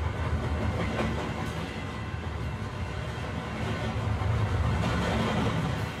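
Low, steady rumble of a train running on rails, swelling a little about four seconds in.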